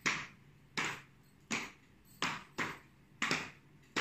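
Hand claps, about eight sharp ones in a roughly steady beat of about two a second, keeping time as the count-in to a song.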